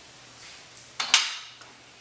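A steel height-lock release bar clinks against the steel frame of a Craftsman motorcycle lift as it is fitted into place, with one sharp metallic clink about a second in.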